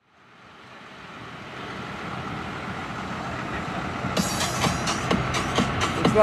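A vehicle running steadily, fading in from near silence after a cut. Music with a steady beat comes in about four seconds in.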